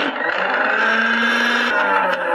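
Electric mixer grinder switched on, its motor starting sharply and running steadily as the steel jar grinds spices to a coarse powder; the whine sinks slightly in pitch as it runs.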